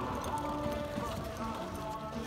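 A horse galloping on arena dirt, its hoofbeats heard under background music.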